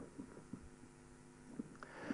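Near silence: faint room tone with a low, steady hum and a few soft ticks.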